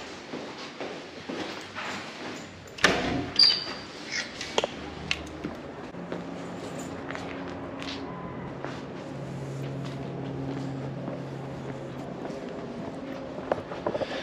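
A door shutting with a sharp knock about three seconds in, a brief high squeak just after it, then footsteps over a steady low hum.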